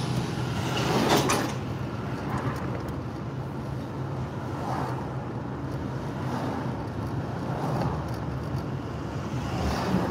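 Steady road and engine noise heard from inside a moving car, a low hum under tyre rush. There is a louder swell about a second in.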